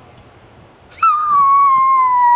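A young girl howling like a wolf: one long, high-pitched howl starting about a second in, held with a slight downward slide in pitch.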